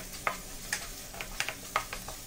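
Wooden spatula stirring and scraping onion-tomato masala around a nonstick frying pan, with a light sizzle underneath. About six short scrapes come in quick succession.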